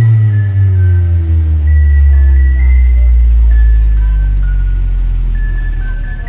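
Loud electronic dance music from a carnival sound system: the beat breaks off into a long, very deep bass tone with a falling sweep, with a few short high synth notes on top.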